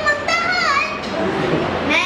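A young boy speaking into a microphone, his voice mostly in the first second.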